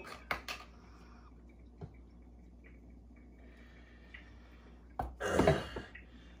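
A few faint clicks and knocks of kitchen items being handled on a counter, then a man clearing his throat near the end.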